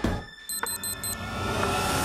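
Game-show electronic sound effect: four quick high beeps about half a second in, over a steady bed of suspenseful background music, sounding as a cut wire knocks out a wrong answer on the bomb device.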